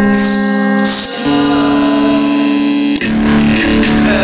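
Music: a guitar-led passage of held chords, changing about a second in and again near the end.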